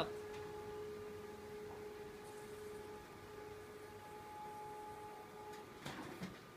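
Konica Minolta bizhub C754 multifunction printer running as it feeds a long sheet of banner paper through: a steady hum with a thin whine that shifts to a higher pitch about halfway, and a couple of clicks near the end.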